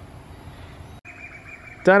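Outdoor ambience: a low steady hiss under a faint, high, steady whine. About a second in, a cut breaks it off and a different steady high whine takes over. A man's voice starts just before the end.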